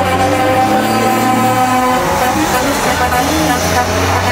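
Semi truck's diesel engine running hard under full throttle as it accelerates down a drag strip, a steady droning tone that resets in pitch about halfway through.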